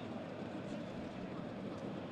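Low, steady ambient sound of a crowdless football stadium from the pitch microphones: an even hiss with no distinct events.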